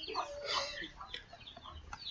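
Faint, short animal calls repeating in the background over low room noise.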